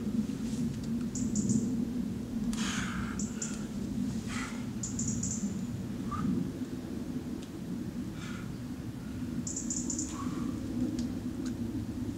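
Birds chirping in woodland, short quick bursts of high chirps coming several times, over a steady low background rumble.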